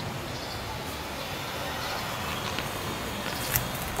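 Steady outdoor background noise with a low rumble of wind on the microphone, and a faint click about three and a half seconds in.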